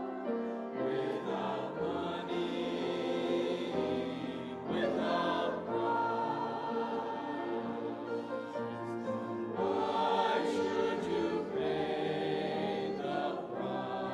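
Mixed-voice church choir of men and women singing a choral anthem with sustained, slowly moving chords.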